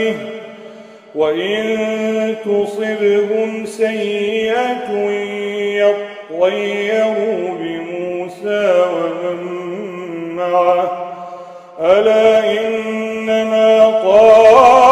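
A man's voice reciting the Quran in melodic tajweed style: long drawn-out, ornamented phrases that slide up and down in pitch. There are short pauses for breath about a second in, around six seconds in, and near the end.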